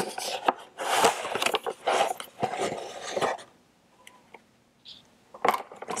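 A cardboard box being handled and opened, with the plastic mochi tray inside scraping and rubbing against it for about three seconds. Then a pause and a single click near the end.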